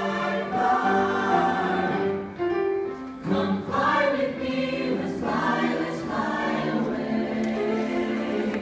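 Vocal jazz ensemble of mixed voices singing held close-harmony chords into handheld microphones, the chords changing every half second or so.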